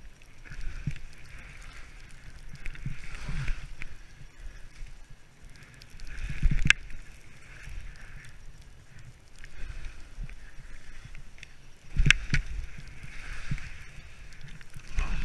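Alpine skis scraping and swishing over chopped-up snow, a hiss with each turn every couple of seconds over a low rumble, with two sharp knocks about halfway through and again near the end.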